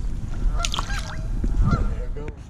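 Geese honking in short, bending calls, over a steady low rumble and a few sharp clicks.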